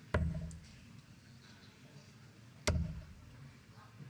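Two steel-tip darts striking a Winmau Blade bristle dartboard, each a short sharp thud, about two and a half seconds apart.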